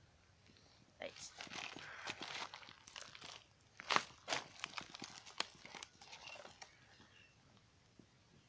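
Dry rustling and crackling with scattered sharp snaps, loudest about four seconds in, as a pole and a nylon fishing net are worked among dry reeds at a pond's edge.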